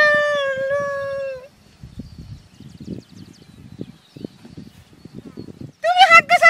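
A man's voice in high falsetto holds one long sung note that ends about a second and a half in, followed by faint low scuffs and rustles.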